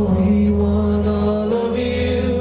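Live worship music: voices holding long, slow notes over acoustic guitar and keyboard, changing note about one and a half seconds in.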